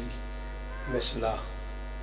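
Steady low electrical mains hum from the microphone and amplifier chain, with a brief voice sound and hiss about a second in.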